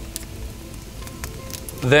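A wood fire crackling faintly in a brick oven, a few sharp pops over soft, steady background music; a man's voice starts near the end.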